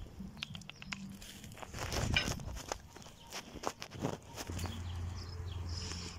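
Scattered light clicks and knocks from cooking at a cast-iron cauldron over a wood fire, with a low steady hum setting in near the end.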